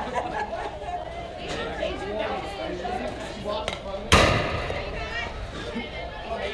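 Spectators chattering, with one loud, sharp crack about four seconds in that rings on briefly after the hit.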